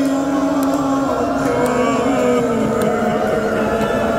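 A man's voice chanting a noha (Shia lament) into a microphone, holding long notes that slide slowly lower about two seconds in.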